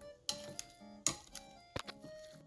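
Background music with steady held notes, over about three sharp clicks of a wire potato masher knocking against the bowl while mashing boiled potatoes.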